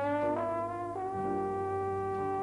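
Live Dixieland jazz band playing, led by a trombone that slides up in pitch and settles on a long held note about a second in, over other horns and a steady bass line.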